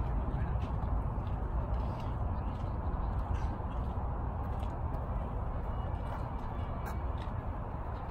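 Steady low rumble of outdoor background noise, with a few faint sharp clicks; the clearest comes about seven seconds in.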